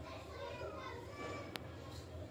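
Faint children's voices in the background, with a single sharp click about one and a half seconds in.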